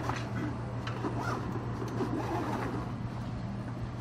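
Zipper on a Mares Cruise Roller dive gear bag being drawn closed: scratchy zipping with fabric rustling, over a steady low hum.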